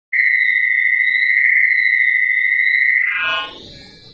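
Synthesized intro sound effect: a loud, steady high electronic tone held for about three seconds, then breaking into a falling sweep that fades out.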